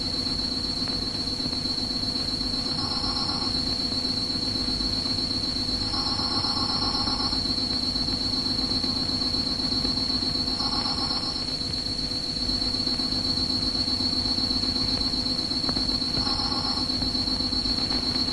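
Film soundtrack night ambience of insect-like trilling: a steady high-pitched trill over a low, rapidly pulsing drone, with a second mid-pitched trill that comes and goes five or six times.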